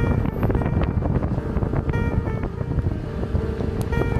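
Heavy wind rumbling on the microphone on a boat, with music playing underneath.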